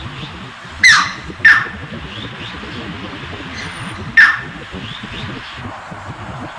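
Striated heron giving three sharp calls that fall steeply in pitch: two close together about a second in and a third about four seconds in. The calls sound over the steady rush of a fast stream.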